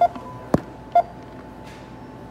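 Self-checkout barcode scanner beeping twice, about a second apart, as items are scanned, with a sharp click between the beeps.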